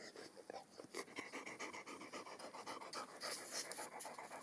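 A dog panting in quick, even breaths that start about a second in.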